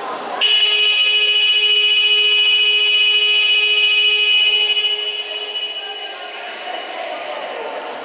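Basketball scoreboard horn sounding one long, steady blast of about four seconds that fades away, signalling the start of the third quarter. Voices of players and spectators in the hall are heard around it.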